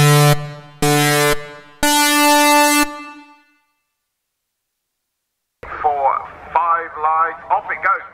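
Electronic countdown beeps like a race-start sequence: two short low beeps about a second apart, then a longer, higher beep that fades out.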